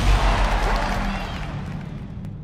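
Intro music fading out: a low boom dies away steadily, with a few faint sweeping tones in the middle.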